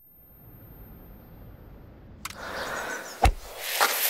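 Quiet noise swelling gradually out of near silence, with a click about two seconds in and a single sharp knock a little after three seconds, followed by a smaller one.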